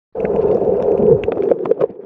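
Muffled underwater sound from a submerged camera: a steady low hum with scattered clicks and crackles. It starts abruptly just after the beginning.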